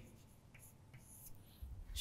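Faint scratches of chalk writing on a blackboard, a few short strokes, with a couple of soft low thuds near the end.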